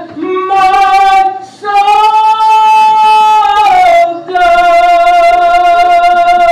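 A woman singing solo into a microphone, amplified over the room's speakers, holding three long, steady notes with short breaks between them.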